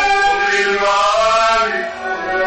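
Vocal trio singing a Moroccan song together in long, held notes that slide between pitches, with a short dip in loudness near the end.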